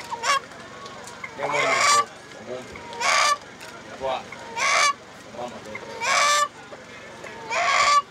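A rooster held in a man's arms calling loudly, five short calls about a second and a half apart.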